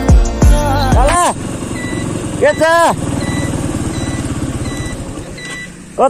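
Background music with a beat for about the first second, then a motorcycle engine running with a steady low pulse that fades near the end. A short high beep repeats every half second or so, and a voice calls out briefly in the middle.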